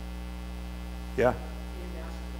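Steady electrical mains hum, with one short spoken "yeah" a little over a second in.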